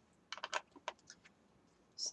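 A few light clicks and taps within the first second, from hands moving card stock and craft supplies on a cutting mat.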